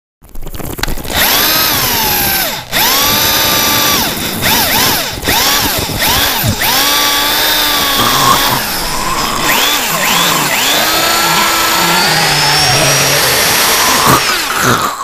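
Harsh noise recording: a loud, motor-like whine that sweeps up in pitch, holds and drops away, about eight times in a row. The last sweep near the end is held longest.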